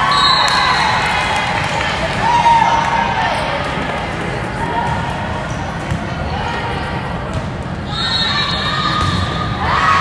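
Indoor volleyball rally: the ball being struck and bouncing, amid players and spectators shouting and cheering.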